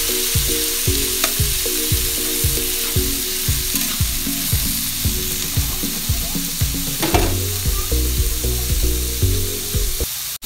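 Squash and long beans sizzling in hot oil in a steel wok while a metal spatula stirs and scrapes through them.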